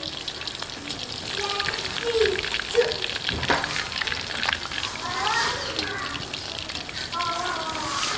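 Chicken pieces deep-frying in hot oil in an iron karahi, a steady crackling sizzle, with a single knock about halfway through.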